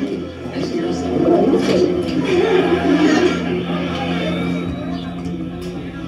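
Television programme audio playing: a voice over background music, with a steady low hum underneath.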